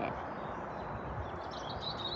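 Steady outdoor background rush, with a small bird starting a high chirping song phrase about a second and a half in.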